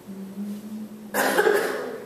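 A single cough picked up through a handheld microphone about a second in, after a low steady hum.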